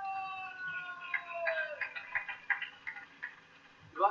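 A sumo yobidashi's drawn-out sung call of a wrestler's name, a long held note that slides down and ends about two seconds in. Scattered hand claps from the audience sound through the middle.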